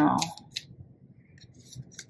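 Faint papery clicks and soft scrapes of tarot cards being handled as a single card is picked from the deck.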